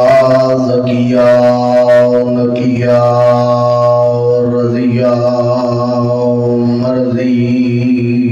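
A man's voice chanting Arabic salutations in long, drawn-out melodic phrases through a microphone. Each note is held for a second or more, and the pitch shifts between phrases.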